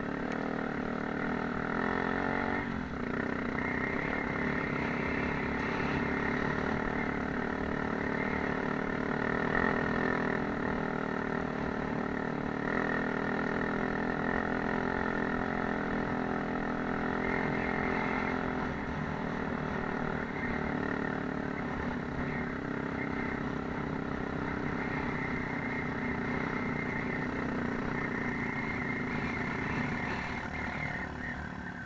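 Off-road motorcycle engine running under way over rough ground, heard from on board. The engine note holds steady, with a few shifts in pitch as the throttle changes.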